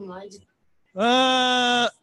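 A man's voice holding one long, steady 'ehh' hesitation sound for about a second, starting about a second in, after faint speech that fades out at the start.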